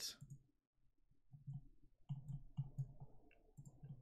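Faint computer mouse clicks, a few scattered through the second half, as lines are drawn in a 3D modelling program.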